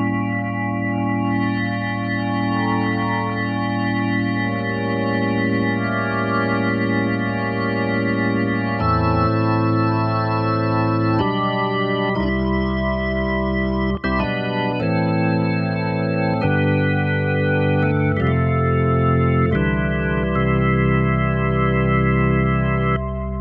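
Clavia Nord Electro 3 stage keyboard playing its Hammond-style drawbar organ sound: long held chords over deep bass notes, the chords changing every second or two in the second half. The sound dips briefly about two-thirds of the way through.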